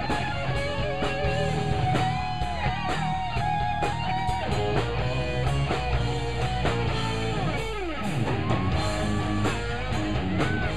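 Live hard rock band in an instrumental break: an electric lead guitar plays held, bent notes with a long downward slide about three-quarters of the way through, over distorted rhythm guitar, bass and a drum kit with steady cymbal hits.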